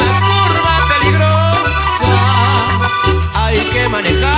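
Instrumental passage of a Latin dance band with no singing: a wavering lead melody over held bass notes and a steady percussion beat.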